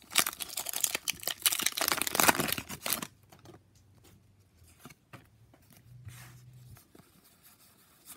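Foil Pokémon Sword & Shield booster pack wrapper being torn open, a loud crinkling rip lasting about three seconds. After that come quieter, scattered rustles and clicks as the cards are handled.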